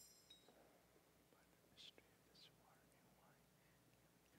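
Near silence with a priest's faint whispered prayer at the altar, a couple of soft hissing sounds about two seconds in.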